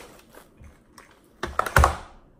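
Rustling and light clicks as a plastic doll with long synthetic hair is handled and shaken, then a louder quick clatter of knocks near the end as it is dropped.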